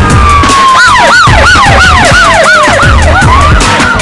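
Siren sound effect over a music bed with a steady drum beat: a slow falling wail, joined about a second in by a rapid up-and-down yelp, about three cycles a second, that dies away near the end.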